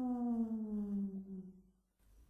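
A man's voice holding a long, drawn-out mournful 'Yarooh!' wail that slides slowly down in pitch and fades out about one and a half seconds in.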